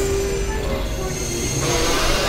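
Experimental synthesizer drone and noise music: sustained held tones over a dense, noisy wash at a steady level, brightening in the upper range near the end.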